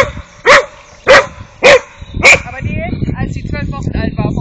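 A dog barking five times in quick succession, about one sharp, high bark every half second. Fearful, defensive barking from a frightened dog.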